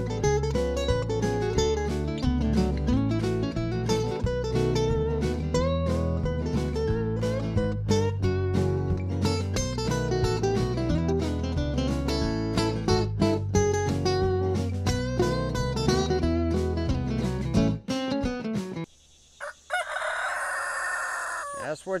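Background guitar music with a regular beat, which stops about three-quarters of the way through. Near the end a rooster crows once, a harsh call about two and a half seconds long.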